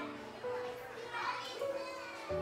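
Children's voices chattering and calling out as they play, mixed under background music with held notes.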